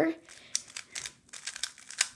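Stickerless 3x3 speedcube being turned quickly through a last-layer algorithm: a rapid, irregular string of light plastic clicks as the layers snap into place.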